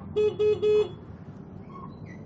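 Motor scooter's electric horn honked three times in quick succession, three short beeps of the same pitch in the first second.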